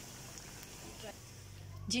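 Rice-and-vegetable kababs deep-frying in hot oil, a steady soft sizzle that stops shortly before the end.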